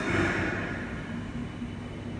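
Steady low hum of a building's air conditioning, with a brief rush of noise at the start that fades over about a second.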